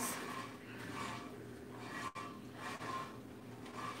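Faint rustling and scraping as a block of cheese wrapped in a cloth is handled and cut with a kitchen knife, in a quiet room.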